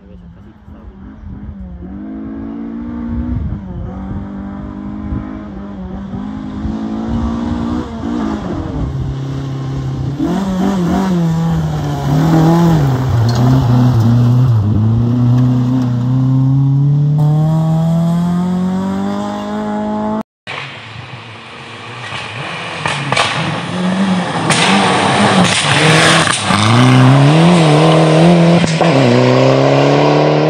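Rally car engine at racing speed on a gravel stage, revving up and dropping back through gear changes and growing louder as it approaches. It cuts off briefly about twenty seconds in, then a rally car approaches again, louder still, with more rising and falling revs.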